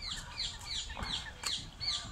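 Ring-necked parakeets calling: a quick run of short, high calls, each falling in pitch, about four a second.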